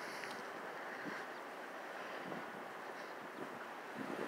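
Faint, steady outdoor background noise with wind on the microphone.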